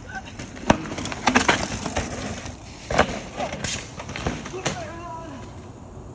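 A mountain bike clattering over rocks and roots on a dirt trail: a run of sharp knocks and rattles, thickest in the first couple of seconds, with a few more knocks later, and faint voices.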